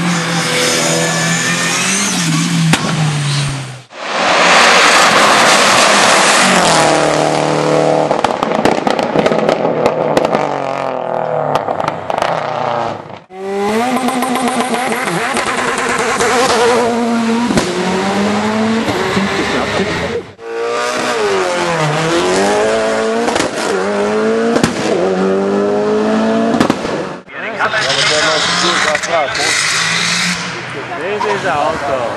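Hill-climb race car engines at full throttle, the pitch sweeping up and dropping back as they shift up through the gears. Several separate car passes follow one another, with some sharp exhaust pops.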